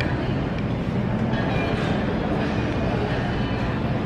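Steady low rumble and hum of supermarket background noise, such as ventilation and refrigerated cases, picked up on a handheld camera that is moving through the aisles.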